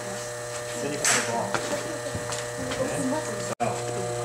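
A steady electrical buzz at several pitches under faint voices, with a brief hiss about a second in and a momentary dropout near the end.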